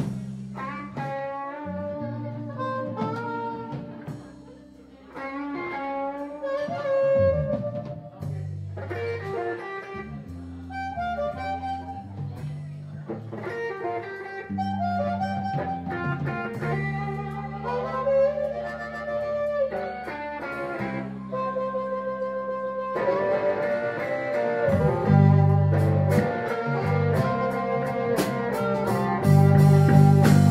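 Live band music: a harmonica solo, played cupped against a microphone, with bending, wailing notes over electric guitar and drums. The band gets louder, with heavier drum and cymbal hits, in the last few seconds.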